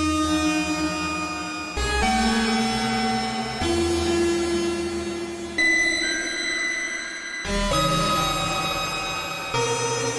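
Arturia Pigments 4 software synth playing a creepy, dissonant patch of detuned saw waves with comb filtering, delay and shimmer effects. It holds sustained chords that shift to new notes about every two seconds.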